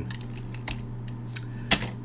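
Computer keyboard being typed on: an irregular run of key clicks as a short command is entered, the loudest click near the end.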